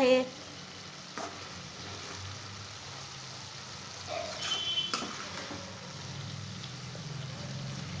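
A steel ladle stirs cooked val bean curry in a steel kadhai, with a soft steady sizzle from the pan on the heat. Light clicks of the ladle against the pan come about a second in and again near five seconds, with a short metallic scrape just before the second click.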